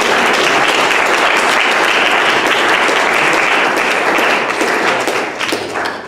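Audience applauding, a steady dense clapping that fades away in the last second.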